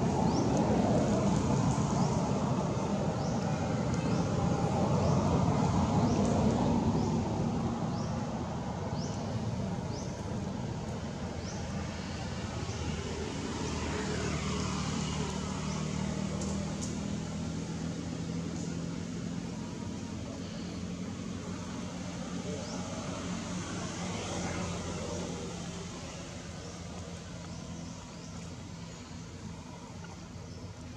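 Background road traffic: a louder rumble over the first several seconds, then a steadier engine hum with a vehicle passing now and then. Short, high chirps repeat throughout.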